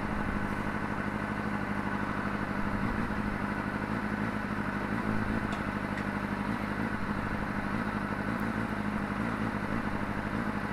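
Honda CBR600RR's inline-four engine idling steadily.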